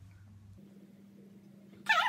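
Quiet room tone with a faint steady low hum, then near the end a short, high-pitched vocal sound from a girl, a brief exclamation.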